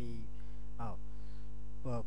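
Steady electrical mains hum in the recording, holding at one even level, broken only by a couple of short spoken syllables.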